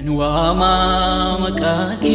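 Ethiopian Protestant gospel song: voices singing over instrumental backing, coming in loudly at the start.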